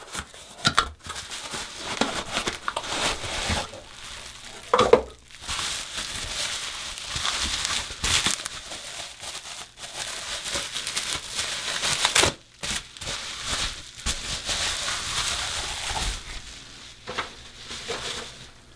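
Plastic packaging wrap crinkling and rustling as a ceramic shaving mug is unwrapped by hand, in uneven handfuls with short pauses. There is one brief, louder sound about five seconds in.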